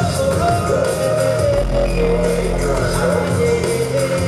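Live electronic rock music played loud over a PA, with a man singing a gliding melody into a microphone and a deep bass note held in the middle.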